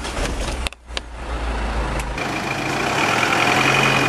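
A London-type taxi cab's engine is started with the ignition key and then runs with a steady hum that grows louder over the last couple of seconds.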